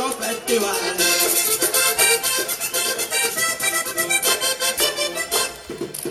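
Diatonic button accordion playing a fast vallenato instrumental run, with percussion keeping an even beat. The music breaks off just before the end.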